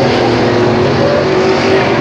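A pack of dirt-track Sportsman late model race cars running their V8 engines around the oval, a steady blend of engine notes that rise and fall slightly, as the field comes to the checkered flag.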